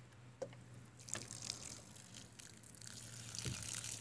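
Water pouring in a thin stream from the bottle-neck spout of a homemade plastic-jerrycan watering can and splashing onto grass. It starts about a second in and grows stronger toward the end, with a light click just before it starts.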